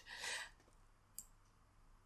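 Near silence: a soft breath at the start, then a single faint computer-mouse click about a second in.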